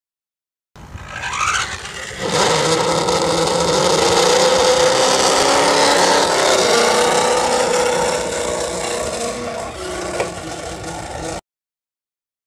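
A motor vehicle running at a steady pitch over a rough scraping, rattling noise, with a brief rise in pitch near the start. It cuts off abruptly.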